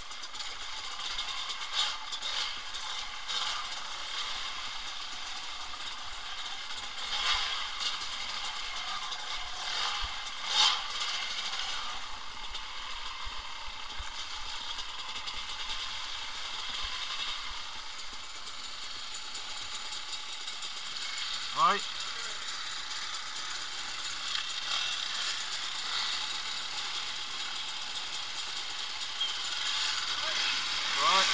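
Trail bike ride heard through an action camera: a steady hiss of engine and wind noise with scattered knocks and rattles from the rough track. A dirt bike engine revs sharply a little past twenty seconds in, and more bikes rev near the end.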